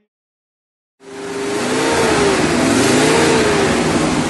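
Car engine revving with a loud rushing noise, its pitch rising and falling; it starts suddenly about a second in, after a brief silence.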